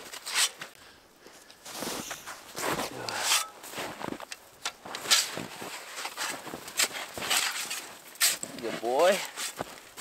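Compact snow shovel digging and scraping through deep snow in irregular strokes, each a short crunch of the blade into the snow. A brief voiced sound with a bending pitch comes near the end.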